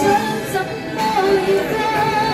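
A woman sings a Cantonese pop song through a handheld microphone over a karaoke backing track, holding long notes.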